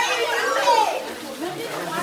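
Several young people's voices talking and calling out over one another, with no clear words.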